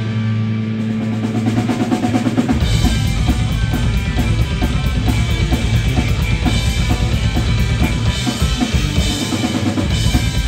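Live heavy metal band with electric guitars and drum kit: a held low chord, then about two and a half seconds in the drums come in with a fast, dense beat under the guitars.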